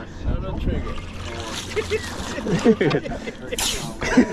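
Laughter and talk over the wash of the sea against the boat, with a short splash near the end as a hooked triggerfish is reeled up and breaks the surface.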